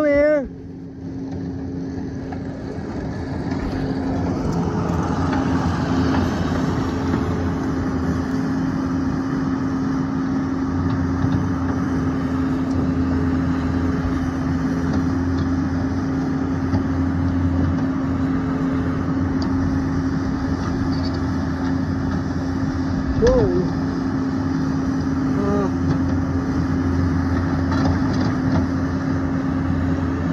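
An engine running steadily, growing louder over the first few seconds and then holding. A short high-pitched call sounds at the very start, and a brief chirp about 23 seconds in.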